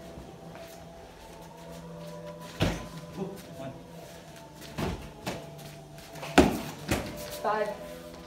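Practice weapon strikes landing on a shield during a blocking drill: five sharp knocks spread over a few seconds, the loudest about three quarters of the way in.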